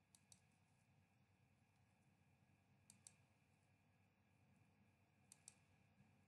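Faint computer mouse clicks while clicking through presentation slides: three quick pairs of clicks, about two and a half seconds apart, over near-silent room tone.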